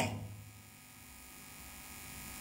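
A pause in speech: quiet room tone with a steady low hum, as the last spoken word fades out at the start.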